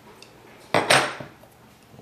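Hard dumbbell parts clinking as they are set down or knocked together: a sharp double clink a little before the middle, ringing briefly.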